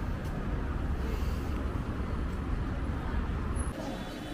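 Street ambience with a steady low rumble of road traffic. The rumble cuts off abruptly near the end, giving way to quieter surroundings.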